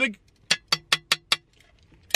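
A metal sheet tray being tapped or flicked five times in quick succession, each a sharp click with a short metallic ring.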